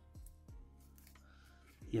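Soft rustles and clicks of a sheet of origami paper being folded and creased by hand, over faint background music.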